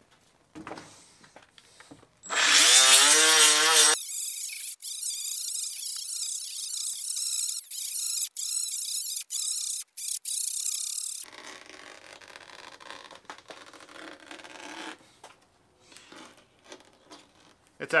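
A cordless right-angle die grinder with a 60-grit Roloc sanding disc spins up with a wavering whine about two seconds in. It then grinds the moulded ridges off a rubber tire sidewall for about seven seconds, briefly cutting in and out, and runs on more quietly until near the end.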